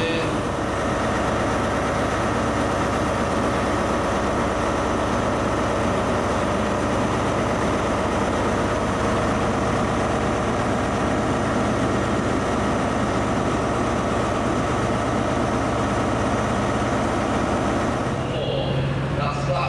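Class 43 HST diesel power car idling steadily, heard up close at the platform.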